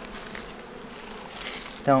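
Italian honey bees buzzing steadily around an opened hive, a continuous hum from many bees at once.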